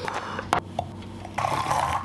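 A foil-lined powder pouch rustling as it is pulled open, with a single click. Near the end a battery-powered handheld milk frother starts whirring as it whisks greens powder into a glass of water.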